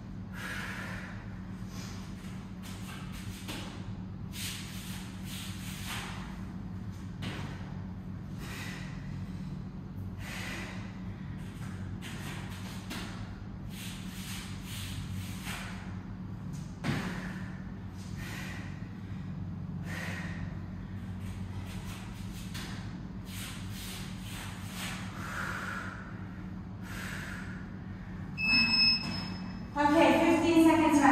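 A woman breathing hard and rhythmically through her nose and mouth while doing squats, walkouts and squat jumps, about one breath a second over a steady low hum. A single thump about halfway through, and short electronic beeps from an interval timer near the end.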